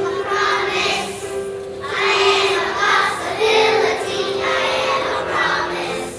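A choir of kindergarten children singing a song together, with piano accompaniment underneath.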